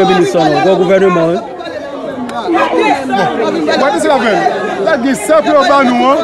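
Speech: a man talking in Haitian Creole.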